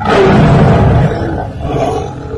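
A tiger roaring once, loud and rough, starting abruptly and trailing off after about a second and a half.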